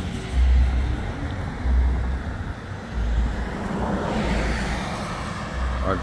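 Road traffic: a car passing, its noise swelling about four seconds in, over repeated low rumbles about every second and a half.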